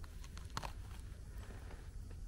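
Quiet handling sounds as ceps are picked by hand from the forest floor: a few faint clicks and crackles of needles and twigs, the clearest about half a second in, over a low steady rumble.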